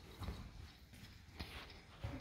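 A few faint footsteps knocking on wooden floorboards.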